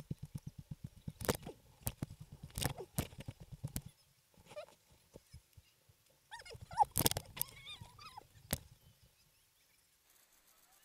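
A helmet-mounted camera being jostled as its wearer runs: a rapid run of low thuds with sharp knocks on the mount. Short yells from people join in about seven seconds in.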